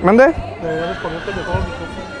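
A person's voice gives a loud, sharply rising vocal cry right at the start, followed by quieter talk.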